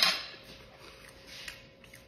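A man's breathy exhale fading over the first half second while he chews a mouthful, then faint mouth and chewing sounds.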